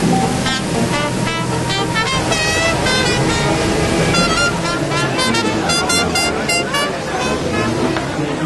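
Music soundtrack: a run of short pitched notes over a steady low bass.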